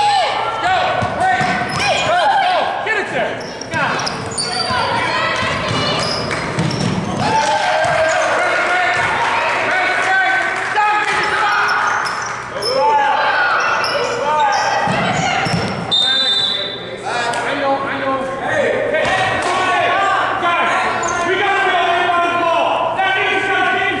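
Youth basketball game in a gym: a basketball bouncing on the hardwood floor under a continuous mix of spectators' and players' voices, echoing in the large hall.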